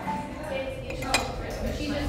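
A single sharp clink about a second in, over low background music and voices.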